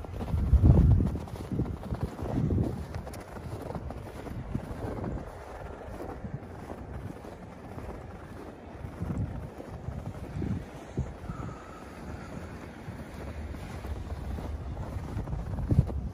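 Wind buffeting the phone's microphone in irregular gusts, strongest about a second in, with footsteps pushing through deep fresh snow.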